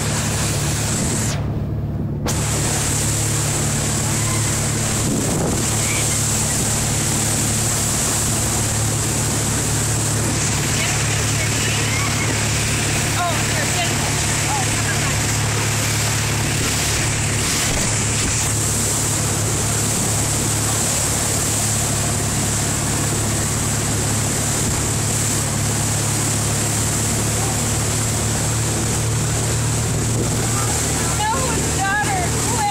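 Motorboat engine running steadily at speed under the rush of its churning wake and wind buffeting the microphone, while towing inflatable tubes.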